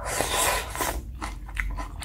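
Close-miked eating of black-bean sauce (jjajang) noodles: a long wet slurp of noodles for about the first second, then chewing with short crunchy bites.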